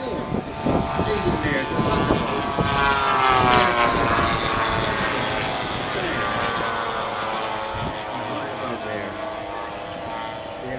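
Engines of a formation of radio-controlled model warbirds droning as they fly over, swelling to their loudest a few seconds in and then fading away.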